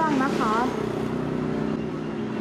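A steady low mechanical drone, like a nearby engine idling, holding one pitch without change.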